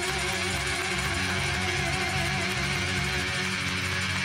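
Live rock band playing an instrumental break: acoustic guitar, electric bass and drums with a tambourine, running steadily.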